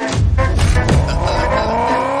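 A car pulling away with a rising whine, laid over a song's heavy bass beat that starts at the very beginning.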